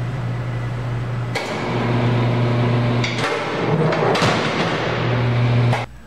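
Incline impact tester running during a pallet and package impact test: a steady machine hum, a sharp clack about a second and a half in, then a stretch of clattering and knocks from the test rig.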